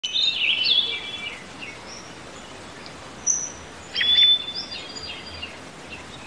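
Birds chirping over a steady background hiss: a cluster of short gliding chirps in the first second, a single high note a little after three seconds, and a longer phrase with a held whistle about four seconds in.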